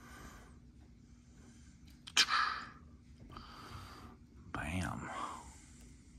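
A man's whispered, breathy vocal sounds, with a sharp click about two seconds in followed by a hissing breath, and a short voiced sound near the end.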